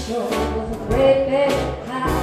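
A jazz group playing live: a woman's voice over piano, double bass and drums.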